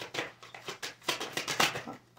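Tarot cards being handled and shuffled: a quick, irregular run of sharp card clicks and flicks, loudest about one and a half seconds in.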